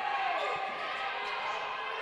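Basketball dribbled on a hardwood gym floor, a few faint bounces over the steady ambience of a large hall.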